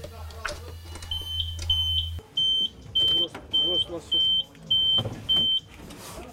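Alarm unit in a prisoner-transport vehicle's compartment giving a repeated high electronic beep, about eight even beeps just under two a second, the sign that its alarm has been triggered. A low hum under the first beeps stops suddenly about two seconds in.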